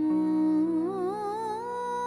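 Background score music: a wordless hummed vocal line comes in at the start over a low sustained drone, gliding upward in pitch with a wavering vibrato.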